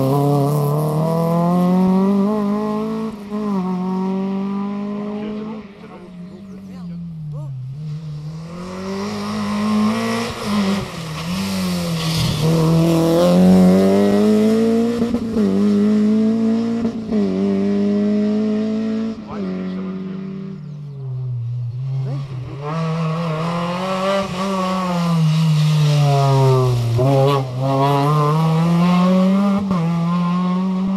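Hatchback rally cars accelerating hard past one after another, each engine note climbing and dropping back at every upshift as they run through the gears. There are two brief lulls between cars.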